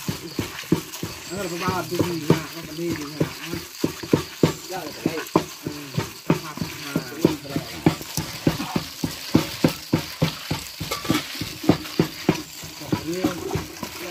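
A hand in a plastic bag squeezing and kneading a wet minced mixture of banana blossom, chicken and blood in a metal bowl, in quick squelching strokes about three or four a second.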